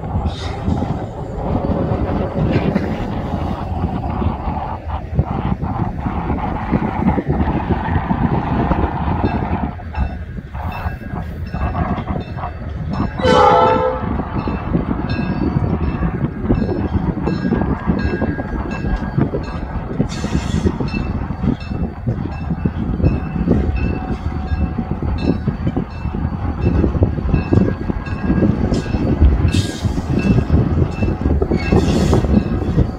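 Illinois Central 3108 diesel locomotive pulling a short freight train slowly toward the listener, its engine running and its wheels clicking over jointed rail, with horn sounding. A brief sharp falling squeal comes about 13 seconds in.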